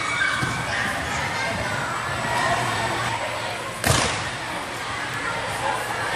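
Background voices and chatter of a busy gymnastics gym, with one sharp, loud thud about four seconds in.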